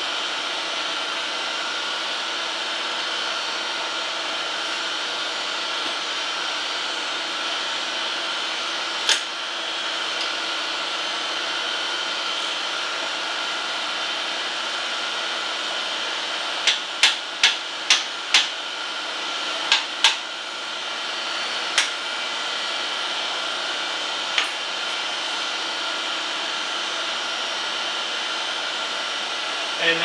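A small hammer taps a bench stone down onto a surface grinder's magnetic chuck, seating it against its shims and back stops. There is a single tap about nine seconds in, a quick run of five taps a little past halfway, then a few scattered taps. A steady machine whir with a few high tones runs underneath.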